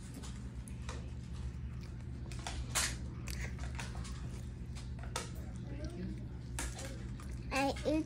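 A small child chewing a slice of cheese pizza, with a few short wet clicks and smacks from her mouth over a steady low room hum. A child starts talking near the end.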